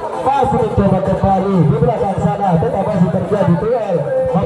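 Several people's voices talking and calling out loudly over one another.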